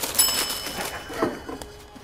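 A bright bell-like chime sound effect rings once and fades over about a second and a half, marking a point scored. Crinkling of crisp-packet plastic runs underneath.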